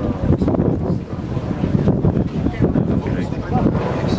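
Wind buffeting the microphone in a low, rumbling rush, with people talking in the background.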